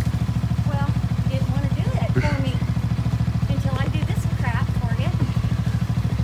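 An engine idling steadily, with an even, rapid pulse that does not change, and faint voices over it.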